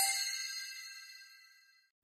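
The fading ring of a bright, bell-like ding sound effect, dying away about a second and a half in.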